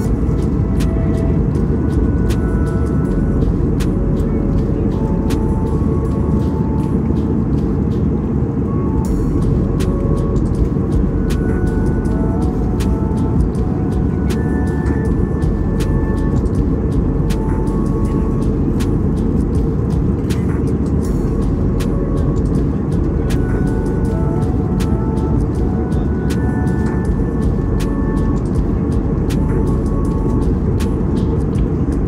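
Steady low rumble of a moving vehicle, with faint music of short scattered notes over it.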